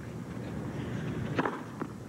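Tennis racket striking the ball on a serve about one and a half seconds in, followed less than half a second later by a second, fainter knock of the ball in play, over a steady low background.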